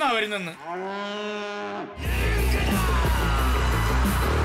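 A man's voice: a few quick words, then one long, drawn-out held vocal note lasting over a second. About halfway through, loud music with a heavy beat starts suddenly.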